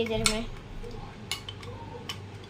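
Metal spoon clinking against a glass tumbler of milky drink, a few separate clinks with gaps between them.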